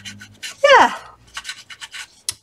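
Foam ink-blending tool rubbed and dabbed along the roughed-up edges of a sheet of paper, a rapid run of short scratchy strokes.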